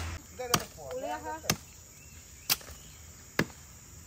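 Machete (parang) chopping: four sharp strokes about a second apart.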